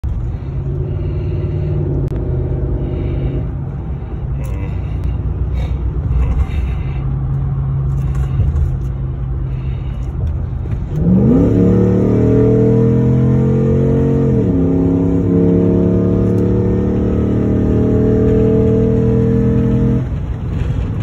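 Car engine heard from inside the cabin, running steadily at low revs. About halfway through, the revs jump sharply as it drops a gear under hard acceleration. The pitch climbs, dips once at a gear change a few seconds later, then climbs again as the car accelerates hard.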